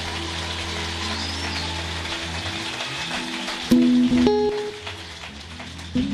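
Congregation applauding over a steady low hum from the sound system, then an electric guitar plucks a few single notes about four seconds in as the church band starts up.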